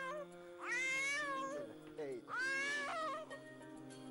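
A young child crying in long wails: one cry trails off at the start, then two more of about a second each, over soft background music with held notes.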